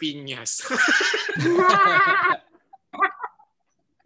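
People laughing loudly on a video call, the laughter lasting about two seconds, then a short laughing burst near the end.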